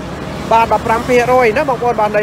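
A person talking in a continuous sales-style delivery, after a brief pause at the start; a steady low background noise runs under the voice.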